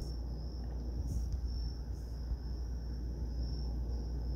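Steady background noise during a pause in speech: a low hum with a faint, continuous high-pitched tone.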